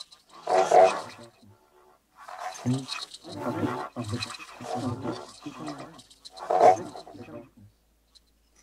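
Electroacoustic tape music made from manipulated voice fragments. A loud vocal burst comes about half a second in, followed by a brief lull, then a dense run of vocal sounds with another loud peak near the end.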